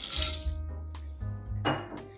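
Plastic LEGO bricks poured from a bowl into a glass bowl of bricks, a brief clatter and clink near the start, over background music with a steady bass line.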